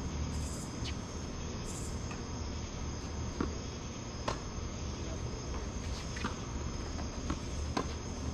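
Crickets chirping steadily in a night insect chorus over a low steady hum, with several sharp knocks of a tennis rally, the loudest about four seconds in and just before the end.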